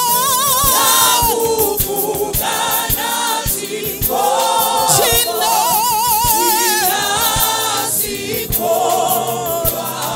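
Gospel praise-and-worship singing: a woman's lead voice with wide vibrato carried over a group of women backing singers.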